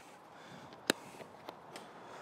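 A plastic tent clip snapping onto a tent pole: one sharp click just under a second in, followed by a couple of faint ticks.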